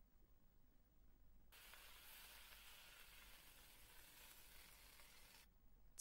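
Very faint sizzle of choy sum stir-frying in a wok, starting about a second and a half in and stopping shortly before the end; otherwise near silence.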